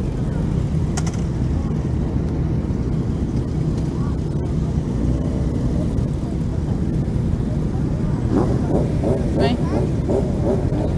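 Many motorcycle engines idling together in a large gathering of bikes, a steady low rumble, with voices in the background.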